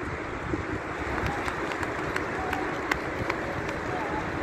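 Steady outdoor wind noise on the microphone, with a few light scattered taps and faint far-off voices.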